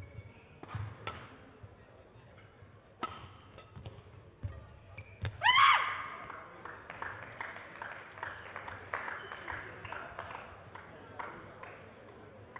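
Badminton singles rally: sharp racket strikes on a shuttlecock, spaced a second or so apart. About five and a half seconds in, as the point ends, there is a loud, brief rising squeal, followed by scattered light clapping and taps in a large hall.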